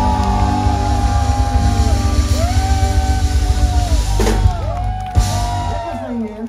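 Live band music: a song sung by a man into a microphone over electric keyboard and a steady beat, with long held melody notes, easing off in loudness near the end.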